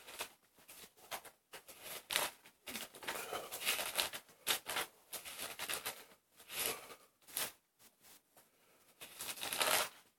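Thin pages of a large Bible being flipped through quickly by hand: a run of short papery rustles and flicks, pausing for about a second and a half near the end before a few more.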